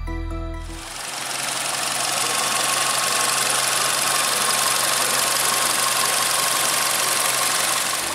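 Volkswagen Vento's 1.6-litre four-cylinder petrol engine idling steadily, heard from the open engine bay as an even whirring mechanical noise over a steady hum. It takes over from background music about a second in.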